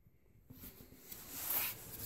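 Total silence at first, then faint rustling of a handheld camera being moved, swelling briefly about a second and a half in.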